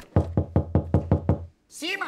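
Rapid knocking on a door, about seven quick knocks a second for just over a second, with a steady low hum underneath that stops with the knocks.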